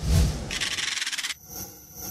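Electronic outro stinger: a deep bass hit under a dense hissing whoosh that cuts off suddenly a little past halfway, followed by a held electronic chord.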